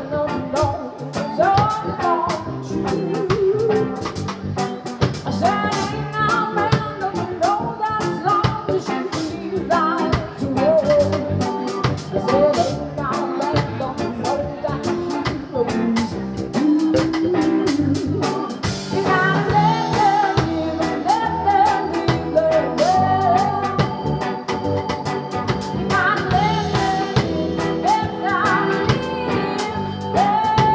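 Live band performing a song: a woman singing lead over acoustic guitar, electric guitar, bass and a drum kit.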